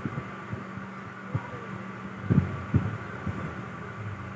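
A steady low background hum with a few soft, dull low thumps scattered through it, the strongest a little over two seconds in.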